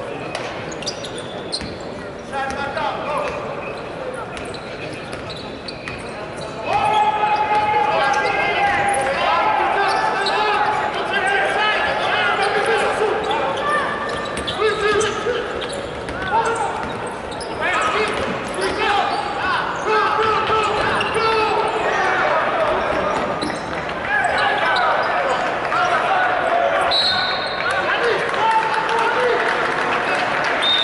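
Live basketball game sound in a large arena: the ball bouncing on the hardwood under a continuous din of crowd and player voices, which grows louder about seven seconds in. A few short, sharp high squeaks near the end.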